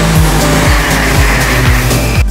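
MRT train pulling into an elevated station: a loud rushing noise with a high steady squeal, cutting off about two seconds in. Background music with a steady beat plays underneath.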